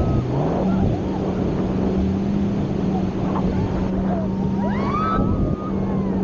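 Wind and rushing water on a banana boat towed at speed, over the steady drone of the towing speedboat's engine. Short high voices of the riders rise and fall about five seconds in.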